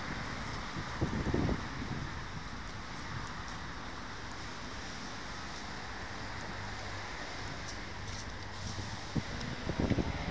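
Steady outdoor street noise with wind buffeting the phone's microphone, and a few low thumps about a second in and near the end.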